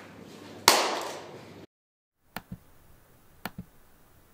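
A single loud, sharp hand clap about a second in, ringing away over about a second: the noise meant to set off the sound-triggered camera. A few faint clicks follow later.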